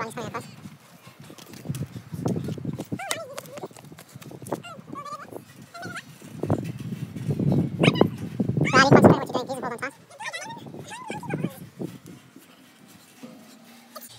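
Children's voices calling out in short cries over an irregular low rumble, loudest a little past the middle.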